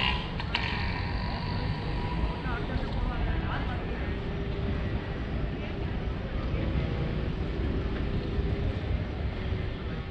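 Outdoor street ambience: a steady rumble of road traffic with the voices of people around.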